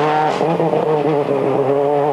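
Ford Focus WRC rally car's turbocharged four-cylinder engine running hard as the car drives away through a bend, its note held fairly steady with a slight waver.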